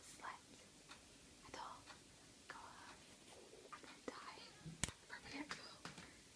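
A person whispering softly in short breathy phrases, with one sharp click a little before the end.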